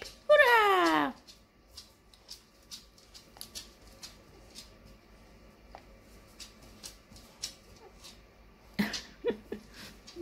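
An animal's loud whining call that falls steadily in pitch over about a second, shortly after the start, followed by faint scattered ticks and, near the end, a shorter burst of sound.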